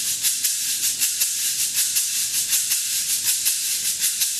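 Meinl SH-7 fiberglass shaker played in a steady, even back-and-forth rhythm of about four strokes a second, the beads inside thrown against the ends of the shell.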